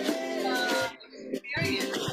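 A pop song with singing and instruments, an uplifting lyric about falling, getting up and learning. The music drops out for about half a second in the middle, then comes back.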